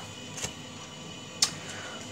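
Playing cards being handled and set down on the table, with a faint click early on and a sharper, louder card click about a second and a half in.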